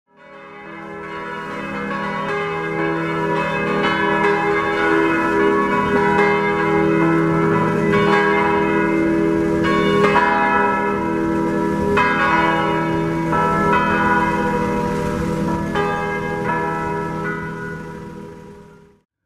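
Church tower bells ringing, several bells struck again and again with a long, overlapping ring. The ringing fades in at the start and fades out near the end.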